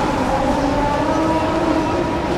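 A man's voice chanting the prayer over loudspeakers in long, held, slightly wavering notes, over a steady background noise of the large crowd.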